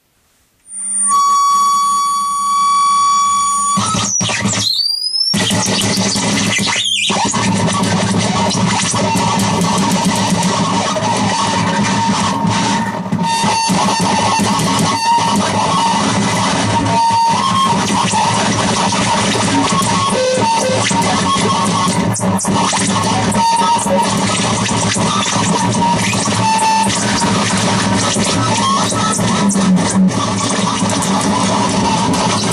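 Harsh noise improvisation from a contact-miked metal plate fed through a chain of fuzz and distortion pedals, digital delay and a Sherman Filterbank. It opens with a steady high tone carrying overtones, sweeps upward twice around four to five seconds, then becomes a dense, loud wall of distorted noise over a steady low drone.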